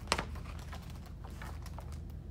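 A picture book being handled and its page turned: one sharp tap just after the start, then light scattered clicks and paper rustles over a steady low hum.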